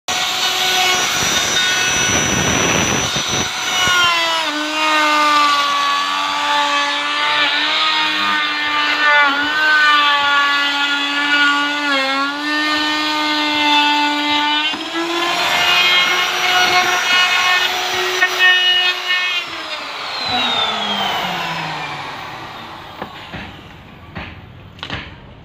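Electric router running at speed with a steady high whine, its pitch dipping briefly a few times. Near the end it is switched off and the whine falls in pitch and fades as the motor winds down.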